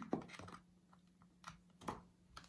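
Two faint clicks about a second and a half in, the second one louder, as a cable's plug is pushed into the side port of a MacBook Pro.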